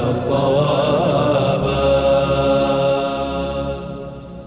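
Closing theme music sung as a vocal chant, settling into one long held note about two seconds in, then fading down near the end.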